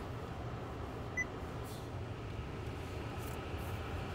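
The 2020 Honda Civic's climate-control blower fan running steadily, air rushing from the dash vents over a low hum, with one short high touchscreen beep about a second in.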